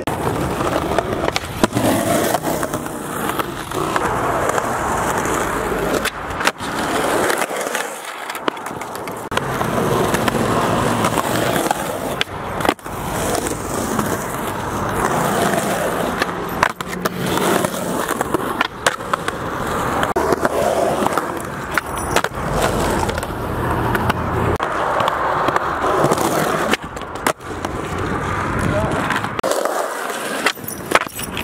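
Skateboard wheels rolling on a concrete bank, a steady rumbling roll broken by several sharp clacks of the board popping and landing.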